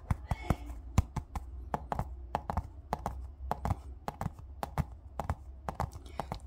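Fingers tapping on a yellow plastic ball: quick, irregular sharp taps, several a second.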